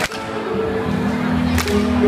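Live indie rock band playing a held electric guitar and bass chord, heard through a phone's microphone in the crowd. Two sharp cracks cut through it, one right at the start and one near the end.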